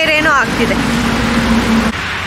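Steady rush of water flowing out of a concrete culvert and spilling over a low ledge. A voice speaks briefly at the start, and a single steady low hum runs for about a second in the middle.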